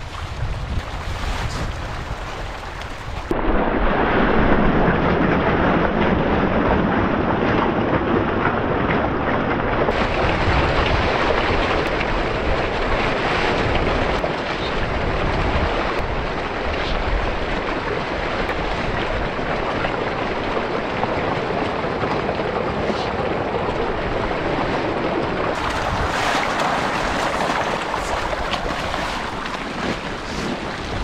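Dense, continuous splashing of a large shoal of tilapia thrashing at the pond surface in a feeding frenzy, with wind buffeting the microphone. The sound changes abruptly a few times, about 3, 10 and 26 seconds in.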